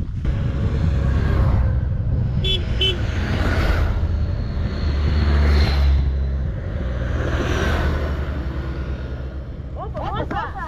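Motorcycle engines running as bikes ride past on the road, swelling to their loudest about five to six seconds in. Two very short beeps sound about two and a half seconds in.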